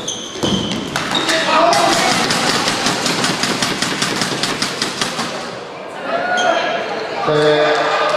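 Badminton doubles play on an indoor court: high squeaks near the start, then a run of sharp, evenly spaced taps, about seven a second, for some four seconds, followed by voices.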